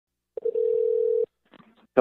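A telephone line tone: a click, then one steady tone lasting under a second that cuts off suddenly as the call connects.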